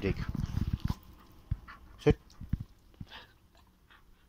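A dog right up close to the microphone, panting and snuffling, loudest in the first second, with a few faint taps afterwards.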